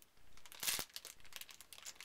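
Small clear plastic bags crinkling as they are handled, in a few brief crackles, the loudest just under a second in.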